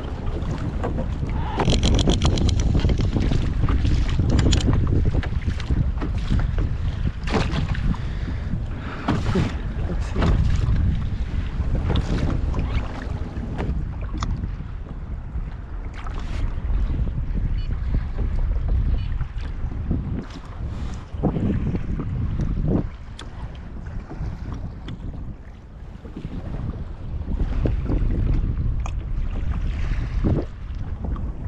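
Wind buffeting the microphone on a sit-on-top fishing kayak at sea, with scattered knocks and clatter from the boat. About two seconds in there is a brief metallic rattle from the anchor chain being handled. The wind eases somewhat in the last third.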